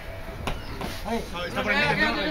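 Voices calling and shouting across a football pitch, with a short knock about half a second in.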